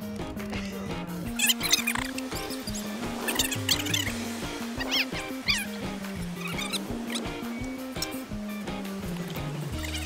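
Background music with a low bass line stepping from note to note, with short high squeaky chirps scattered over it.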